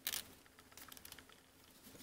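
Small plastic action-figure parts handled and pressed together: a short scrape just after the start, then faint light clicks and rubs as a wing peg is worked into a tight hole in the figure's back.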